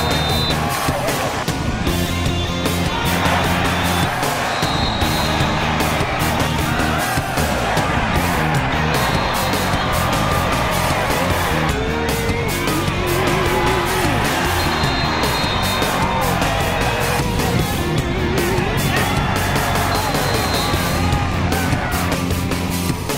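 Loud background music with a steady beat and a moving bass line.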